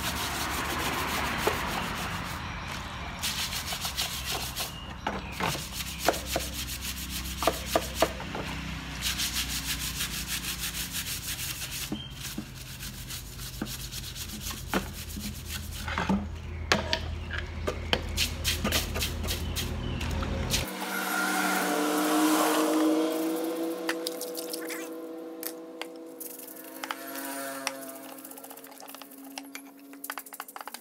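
Stiff brush scrubbing a stripped aluminium motorcycle fork leg in soapy water: repeated rubbing strokes with small knocks and clicks against the metal, washing off paint stripper. About two-thirds of the way through, the low hum stops and a run of held, music-like tones comes in and dominates.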